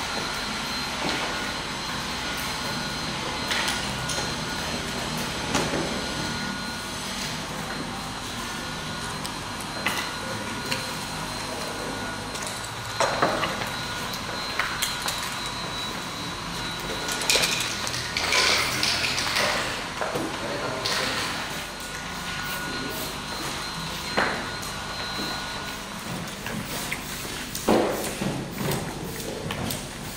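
Ambience of a large hall: a steady background hum with indistinct voices and scattered knocks and clatter. The knocks are most frequent a little past the middle and again near the end.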